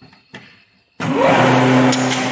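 A light click, then about a second in the electric motors of a wooden brush-handle machine switch on abruptly: a whine rises in pitch as they spin up, and they settle into a steady loud hum.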